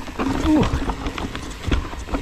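Mountain bike descending a rocky trail: tyres and bike clattering over rocks and roots in many quick knocks, over a low rumble.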